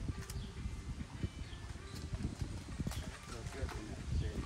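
Faint, scattered knocks and clatter of wooden parts being handled and set down during gazebo assembly, with low background voices.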